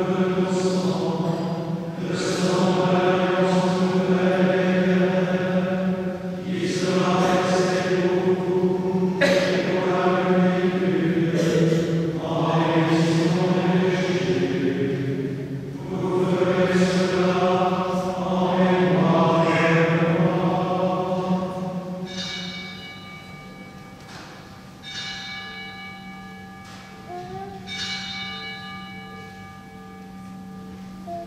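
A solo voice sings the liturgical chant of the eucharistic prayer in short phrases over a steady low drone. About two-thirds of the way in the chant stops and bells ring out in several strokes that each die away, marking the elevation at the consecration.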